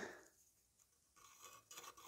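Near silence, with faint scratching from a pen drawing a line across a timber and car-body-filler mould in the second half.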